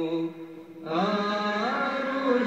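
A solo voice chanting Islamic religious chant in long, melismatic phrases. A held note fades out just after the start, then after a short pause a new phrase begins about a second in, with turning, ornamented pitch.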